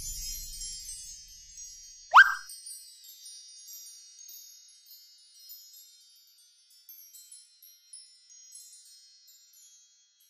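A magical sparkle sound effect: a cascade of high, twinkling chime notes with one loud, quick rising swoop about two seconds in. The twinkles then thin out and fade away. Low background music dies away in the first second or two.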